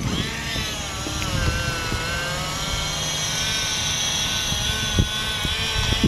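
The electric folding motor of a GolferPal Easy Pal four-wheel golf push cart whines steadily as the cart folds itself up. There is a single click about five seconds in.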